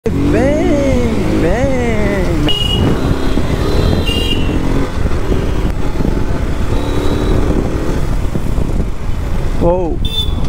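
KTM RC 200's single-cylinder engine running as the motorcycle is ridden through town traffic, with steady rumble and wind noise. A voice is heard in the first couple of seconds.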